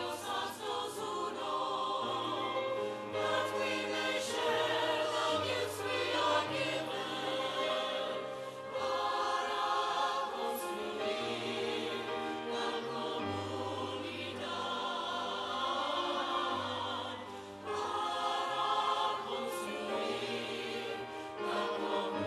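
A choir singing a sacred piece with instrumental accompaniment, sustained chords over a bass line that moves about once a second.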